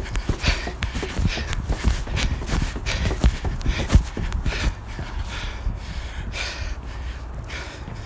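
Footsteps on outdoor wooden stairs during a stepping drill: irregular knocks of shoes landing on the wooden treads, the loudest about four seconds in, with hard breathing between steps.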